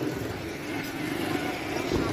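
Steady background noise of street traffic, with faint voices in the distance.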